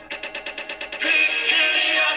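Recorded classroom song playing back: a quick run of evenly spaced percussive taps, then about a second in the full accompaniment and singing come in, much louder.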